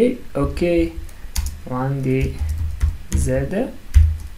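Computer keyboard typing: a few scattered keystrokes as code is entered, with a man's voice heard in short stretches over it.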